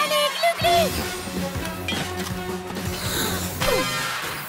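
Cartoon action-scene background music with a steady low bass line, with short gliding sound effects over it and a falling slide near the end.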